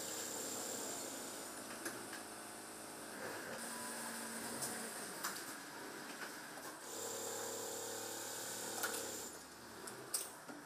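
Industrial sewing machine running in stretches of stitching with a steady motor hum: one run in the first three seconds or so and another from about seven seconds in, with light clicks between.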